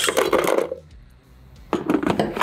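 Ice cubes tipped out of a coupe glass into an ice bucket, clattering for under a second; a few light knocks near the end.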